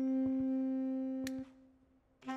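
Background music score: a saxophone holding one long low note that ends about one and a half seconds in, followed by a short silence.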